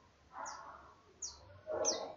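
A bird chirping in the background: three short, high chirps, each falling quickly in pitch, a little under a second apart.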